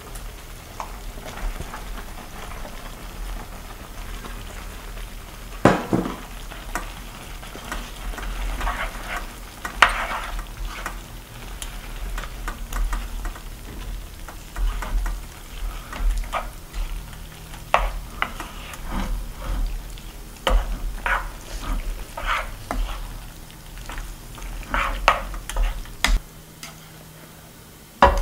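Creamy curry sauce simmering in a frying pan while thick udon noodles are stirred and folded through it with a spatula: a steady low sizzle under repeated wet scrapes and squelches. A few sharp knocks of the spatula against the pan stand out, the loudest about six and ten seconds in.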